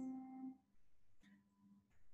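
Piano note dying away in the first half second after a played phrase, then near silence with a faint low tone about a second in.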